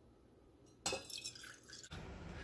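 Coffee poured from a coffee-maker carafe into a metal canister: a splashing pour that starts suddenly almost a second in and lasts about a second.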